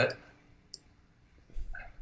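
A pause in conversation, low room tone with a single short click about three quarters of a second in, and a faint low bump near the end.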